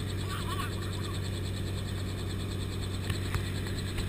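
Helicopter engine and rotor running steadily on the ground after landing, heard from inside the cabin as a constant low hum, with a couple of faint clicks a little after three seconds in.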